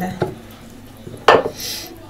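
Wooden rolling pins knocking and clattering on a floured kitchen countertop, with one sharp knock a little over a second in, followed by a brief soft hiss of flour being brushed across the counter by hand.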